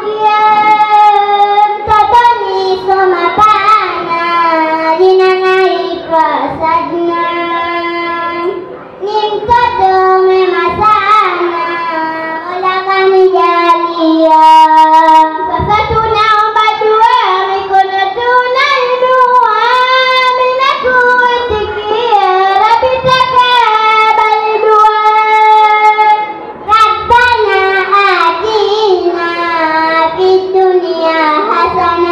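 Young girls singing a Swahili utenzi (traditional verse poem) into microphones, unaccompanied, in long held notes that bend and turn between phrases.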